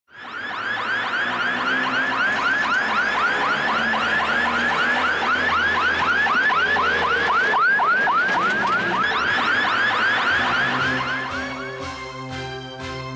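Electronic siren yelping in fast repeated pitch sweeps, about five a second, over low background music; the siren fades out near the end.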